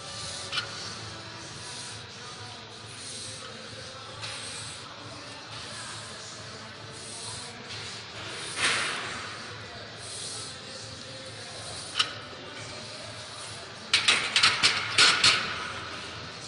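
Steady gym background hiss with faint music during a set of barbell bench press, with a short rush of noise about halfway through and a couple of sharp clicks. Near the end, loud rubbing and knocking of the camera phone being handled.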